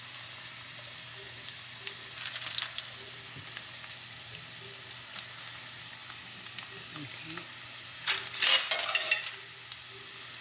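Egg rolls shallow-frying in vegetable oil in a pan, a steady sizzle. It flares louder briefly about two seconds in and again, most loudly, for about a second near the end.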